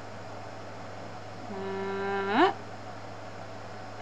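A woman humming one note, held steady for about a second and then sliding sharply upward at the end, over a steady low background hum.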